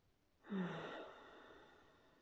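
A woman's deep breath out, an audible sigh. It starts suddenly about half a second in with a brief voiced sound, then trails off as a breathy exhale over about a second.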